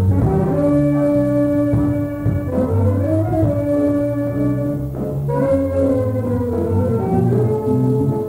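Jazz big band playing: the brass and saxophone sections hold long sustained chords over bass and drums, with one voice rising and falling in pitch near the middle.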